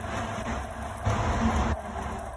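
Electric oven running with its rotisserie motor turning the spit: a steady mechanical hum with noise, a little louder for a moment about a second in.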